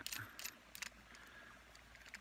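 Small metal clicks of a retractable pen fishing pole's reel being handled and tightened into its seat. A few light clicks come mostly in the first second, with one more near the end.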